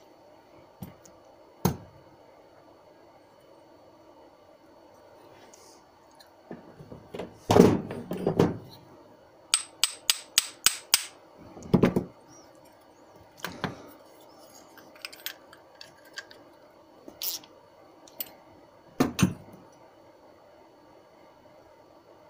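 Steel bush parts (a sleeve, cup washers and a bolt) clinking and knocking as they are handled and fitted together by hand. There are scattered single knocks, a louder clatter about seven to eight seconds in, and a quick run of about seven sharp metallic clicks around ten seconds in.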